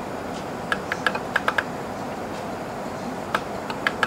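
Small plastic buttons on top of a Sony ICF-C1T clock radio clicking as they are pressed over and over to set the alarm time: a quick run of about eight clicks in the first second and a half, then a few more near the end, over a steady hiss.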